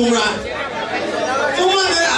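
Chatter of several voices talking at once in a large hall.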